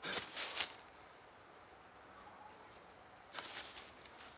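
Two short bursts of rustling in dry leaves and forest undergrowth, one at the start and one a little after three seconds in. Faint high chirps sound in the quiet between them.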